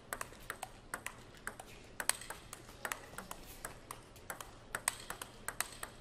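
A fast table tennis rally: the ball clicks in quick alternation off the rackets and bounces off the table, about three or four sharp clicks a second, in a backhand exchange with chop blocks.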